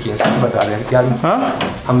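Speech only: people arguing in Hindi, with the voices raised in denial.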